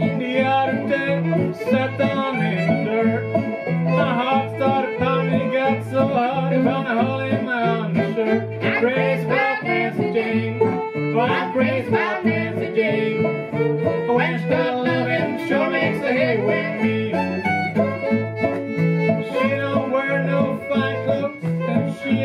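Old-time string band playing an instrumental break: bowed fiddle over banjo and acoustic guitar, with the guitar's bass notes alternating in a steady beat.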